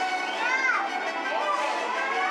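High voices crying out in short, gliding shouts, like children at play, over steady instrumental stage music.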